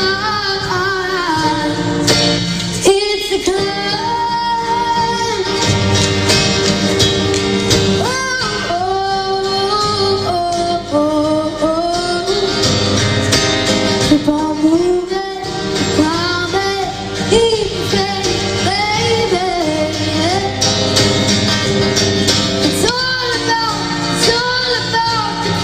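A young girl singing a slow pop ballad live to her own acoustic guitar strumming, the voice holding and bending long notes.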